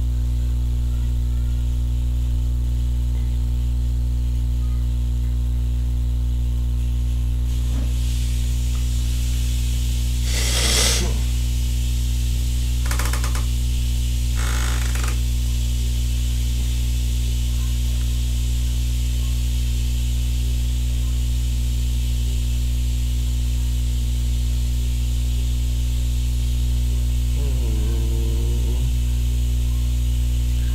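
Loud, steady electrical mains hum with a buzz of overtones on the recording. Three short hisses break in about ten to fifteen seconds in.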